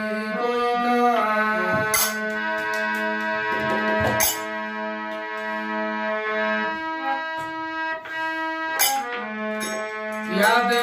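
Harmonium playing a slow melody of held reed notes, with three sharp percussion strokes about two, four and nine seconds in.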